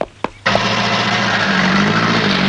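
A truck's engine comes in suddenly about half a second in and runs loud and steady, after two short knocks.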